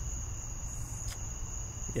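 Background noise of the recording in a pause between speakers: a steady high-pitched whine over a low hum, with one faint click about halfway through.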